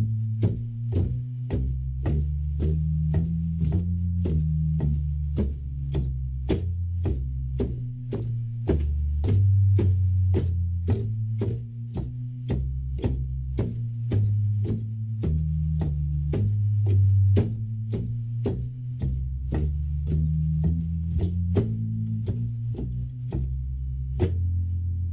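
Hammond organ playing a walking bass line in F blues, about two notes a second. The left-hand bass is doubled note for note on the pedals, adding weight to the low end. Each note starts with a sharp click.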